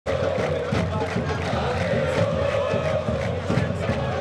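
A stadium crowd of football supporters chanting and shouting together, a dense, steady mass of many voices.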